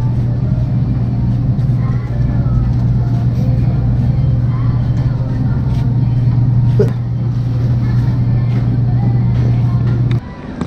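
Steady low hum of open supermarket freezer cases running, over the general noise of a busy store.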